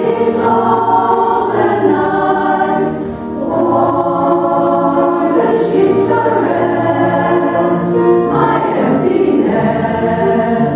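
Women's choir singing in harmony in a church, with a short dip in level about three seconds in, between phrases.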